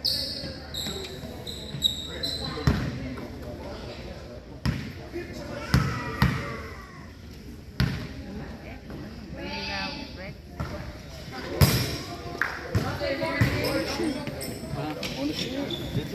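A basketball bouncing on a hardwood gym floor a number of times at uneven intervals, during free-throw shooting, with people talking. A few short high squeaks come in the first two seconds.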